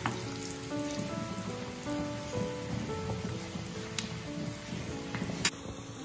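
Hot oil sizzling steadily around medu vadas (urad dal fritters) deep-frying in a kadai, under background music of short, separate notes.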